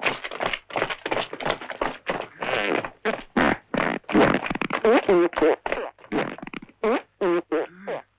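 A rapid string of comic fart noises, one after another with short breaks between them.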